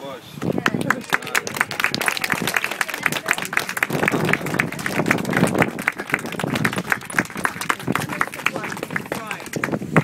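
A small crowd clapping, starting about half a second in and going on steadily, with voices chattering underneath.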